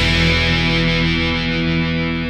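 A distorted electric guitar chord left ringing after the rest of the band stops on a hardcore punk song's final hit, holding steady and slowly fading.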